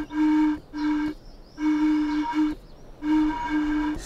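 Wind sounding a note on a steam engine: one steady low hooting pitch, like blowing across the top of a bottle. It comes and goes in about six short hoots.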